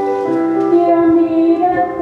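A stage-musical song sung with instrumental accompaniment, the voice holding long sustained notes.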